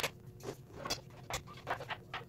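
A hand screwdriver driving a screw into a toy-kitchen panel, making short, irregular scraping clicks about every half second.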